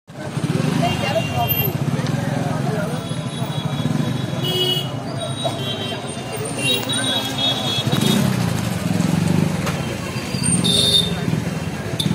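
Crowd chatter from many people talking at once, mixed with street traffic: motorbike and car engines running, with a few short high toots.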